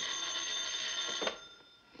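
Desk telephone bell ringing, one steady ring that stops about a second and a half in.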